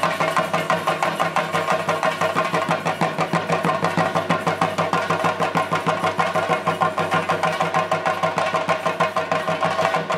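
Drums beating a fast, even rhythm, with steady pitched tones ringing above the beat.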